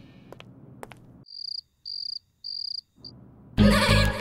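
Cricket chirping in otherwise dead silence, the stock effect for an awkward pause: three even, high-pitched chirps and a short fourth. A music cue fades out just before the chirps, and loud background music cuts in near the end.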